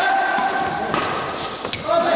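Badminton being played on an indoor court: long, steady high-pitched squeaks of shoes sliding on the court floor, with a few sharp hits of racket on shuttlecock.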